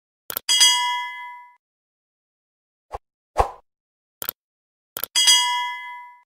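Two bright bell-like digital dings, one about half a second in and one near the end, each with a sharp click just before it and ringing away over about a second. A few short clicks fall in between.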